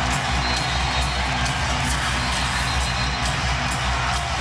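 A packed basketball arena crowd roaring and cheering without a break over loud music with a steady bass, loud enough that the building and the courtside table are shaking.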